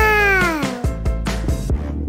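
A single meow-like cry, rising then falling in pitch and about a second long, over steady background music.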